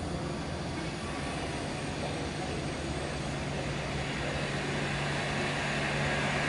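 Diesel engines of intercity buses running, a steady drone with a low engine note that grows gradually louder toward the end as a bus comes nearer.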